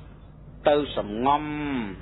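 A man's voice speaking after a brief pause, drawing one low syllable out into a long held tone that rises slightly and then falls away.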